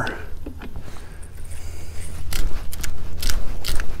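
Hand pepper grinder being twisted, cracking peppercorns in short crunching strokes about three a second, starting a little over two seconds in.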